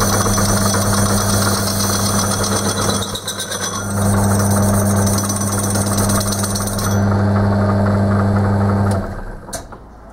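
Metal lathe running with a steady motor hum while a cutting tool turns the rim of a spinning wheel, a harsh cutting hiss over the hum. The cut eases briefly about three seconds in and stops about seven seconds in, and the lathe shuts off and winds down near the end, followed by a single click.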